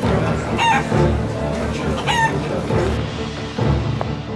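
Two short chicken calls, about a second and a half apart, over background music.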